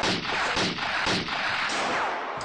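Gunfire sound effect dubbed over a toy-gun scene: a loud, unbroken run of rapid, overlapping shots, a few strokes a second, easing slightly near the end.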